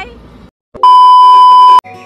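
A loud, steady electronic beep, one pure tone held for about a second and cut off sharply. It is an edited-in sound effect, not a sound from the scene. Music with plucked strings and flute starts right after it.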